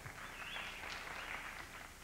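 Faint audience applause that rises about half a second in and tails off near the end.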